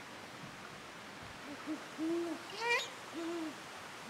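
Great horned owl hooting: a couple of short low notes leading into two longer, deep hoots about a second apart. A brief, higher rising call sounds between the two hoots.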